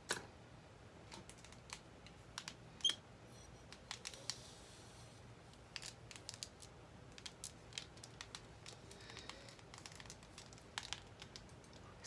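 Faint scattered clicks and soft rustling as hair is handled and a spring-clamp curling iron is opened and closed around a section of hair; the sharpest clicks come just as it starts and about three seconds in.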